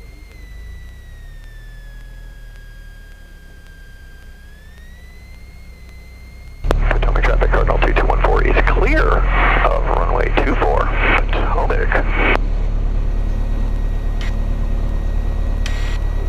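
Cessna 177 Cardinal's engine heard from inside the cockpit while taxiing. For the first several seconds there is only a faint steady whine that dips slightly in pitch, then about six and a half seconds in the low engine drone suddenly becomes loud. For several seconds a voice comes in over the drone.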